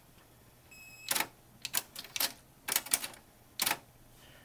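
Kenwood cassette deck being operated by hand: a brief faint tone about a second in, then a run of sharp mechanical clicks from the deck's keys and transport, some in quick pairs.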